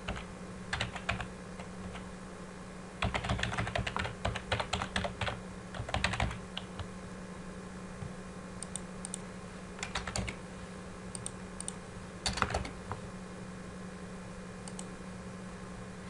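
Computer keyboard typing in short bursts of keystrokes: a brief flurry about a second in, a longer run of rapid typing from about three to five seconds in, then scattered short groups of clicks. A low steady hum runs underneath.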